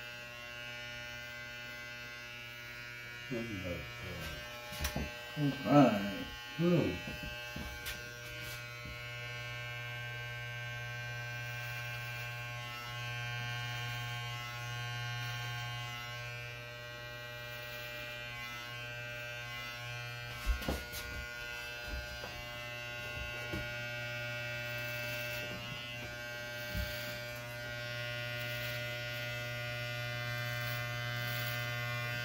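Corded electric hair clippers running steadily with a buzz as they taper a client's neckline. A person's voice breaks in briefly about four seconds in, and a couple of sharp clicks come about twenty seconds in.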